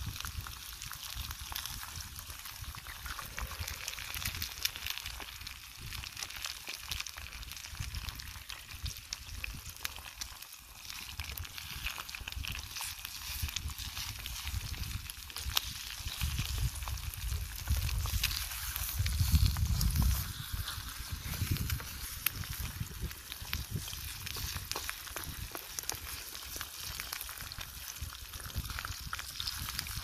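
Bacon and eggs sizzling in a small frying pan over a wood campfire, a steady hiss scattered with little crackles. A low rumble swells for a few seconds past the middle.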